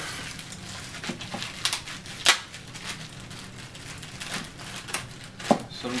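Plastic packaging bag and paper being handled and unwrapped: crinkling, with a few sharp crackles, the loudest a little over two seconds in.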